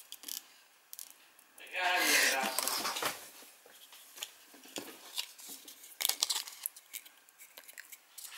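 Small clicks and rustles of stiff paper and a plastic bottle cap being handled as a cardboard boat is pushed into slits in the cap. About two seconds in, a voice breaks in for about a second and a half.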